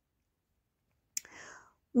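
Silence for about a second, then a mouth click and a short breath in before a woman's voice begins speaking at the very end.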